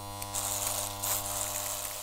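Electric hair clippers buzzing steadily, a bright hiss joining the buzz about a third of a second in.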